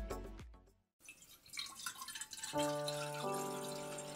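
The previous music fades out, and after a brief gap water dripping and trickling begins. Soft, sustained music notes enter about two and a half seconds in.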